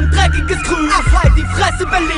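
Hip hop track: a rapped vocal over a beat with deep bass and drum hits.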